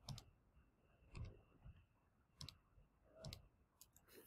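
Faint, irregular clicks of a handheld calculator's keys being pressed, about six taps, as a division is worked out.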